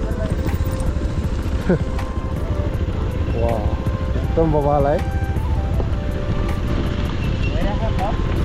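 Motorcycle riding on a rough dirt track: a steady low rumble of engine and wind, under background music with a singing voice that comes in a few short phrases.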